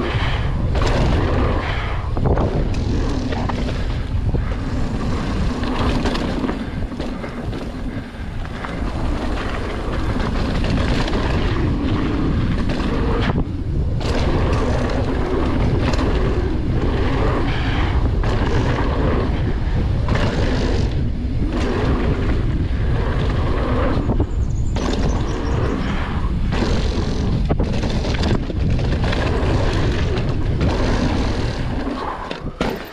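Wind rushing over the handlebar camera's microphone and knobby mountain bike tyres rolling on a dirt trail, with the bike rattling and knocking irregularly over bumps.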